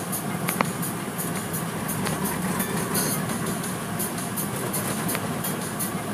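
Automatic car wash heard from inside the car: water spray and cloth brushes working over the soapy windshield and body, a steady rumble with quick, irregular hissing surges. A single knock about half a second in.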